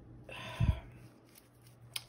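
A short breath sigh close to the microphone, about half a second long, with a low puff of air hitting the mic in the middle. A small click follows just before she starts speaking again.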